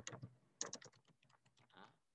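Faint keystrokes on a computer keyboard as a word is typed: two quick runs of clicks in the first second, then a pause.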